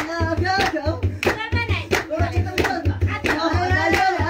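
Group singing of a traditional song, carried by rhythmic handclaps and a steady low drumbeat, to accompany dancing.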